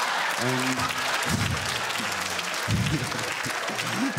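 A large audience laughing and applauding steadily, a dense patter of many hands clapping with a few louder laughs rising out of it.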